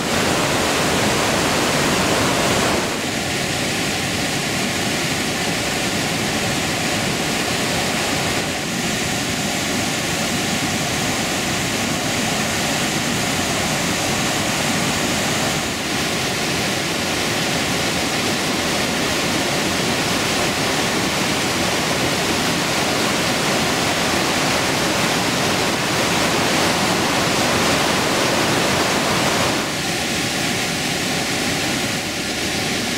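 Alcantara River white water rushing through a narrow basalt gorge: a loud, steady rush that shifts slightly in level a few times.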